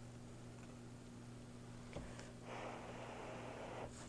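A spoon scooping soft, cheesy scalloped potatoes out of a cast iron skillet: a light click about two seconds in, then a soft hiss lasting over a second, over a steady low hum.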